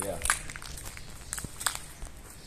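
Footsteps with scattered short, irregular clicks and crackles over a low, steady rumble.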